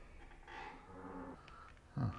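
A man's low whimpering moan, about a second long, from a drunk man lying curled up and holding his head.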